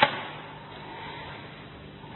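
A single sharp click or knock right at the start, then a faint, steady background hiss.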